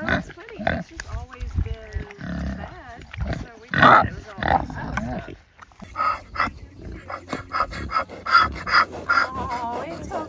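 Pigs grunting as they eat leaves held out to them through a wire fence. A person laughs in quick bursts over the last few seconds.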